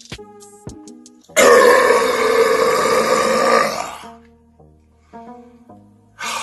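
A man lets out one long, loud belch after gulping soda. It starts about a second and a half in and lasts about two and a half seconds, over quiet background music with soft struck notes.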